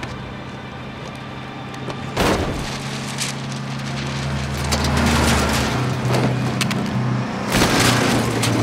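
Freeway traffic at speed: heavy trucks rushing past over a low steady hum, with a sudden loud rush about two seconds in and another just before the end.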